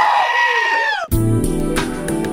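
A black-faced sheep gives one long, loud bleat that falls in pitch and cuts off suddenly about a second in. Music with a bass line then begins.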